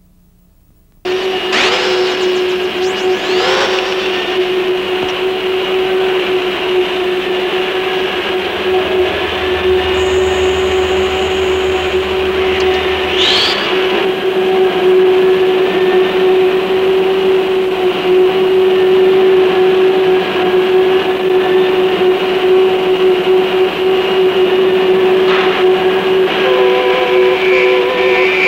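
A loud, steady drone on one constant pitch that cuts in suddenly about a second in, with a few short whistle-like sweeps over it, one rising about halfway through.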